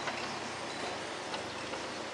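Steady hum of distant traffic and town noise, with a few faint clicks.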